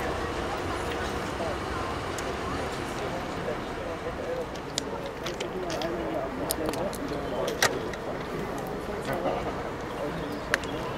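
Indistinct chatter of onlookers over a steady low rumble, with a few sharp clicks, one louder click about three-quarters of the way through.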